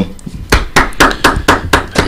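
Hand claps: a quick run of sharp claps, about six a second, starting about half a second in.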